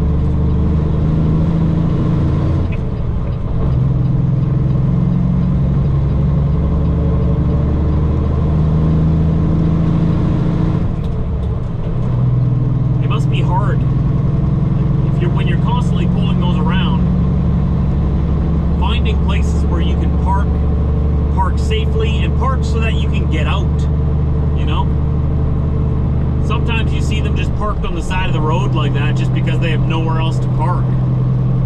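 Semi truck's diesel engine droning steadily, heard from inside the cab while driving. The drone dips briefly and steps in pitch a few times, as at gear changes. Short, irregular high sounds come over it through the second half.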